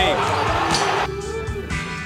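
Televised basketball game audio, a commentator's voice over the arena sound, cuts off about a second in and gives way to background music with sustained tones.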